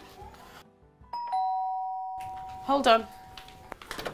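Two-tone doorbell chime, ding-dong: a higher note about a second in, then a lower one, both ringing on together until near the end.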